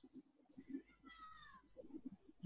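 Near silence, with one faint, short, falling high-pitched cry about a second in.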